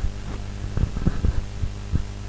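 Steady electrical mains hum in the recording, with a scatter of low, dull thumps, about five of them.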